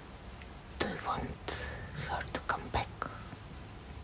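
A woman whispering softly, broken by a few short clicks.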